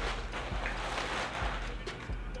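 Clear plastic bag crinkling and rustling as clothing is pulled out of it, with a few small clicks.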